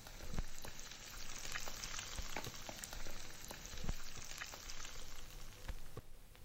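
Steady hiss of falling rain with scattered light drips and ticks. It starts abruptly and cuts off just before the end.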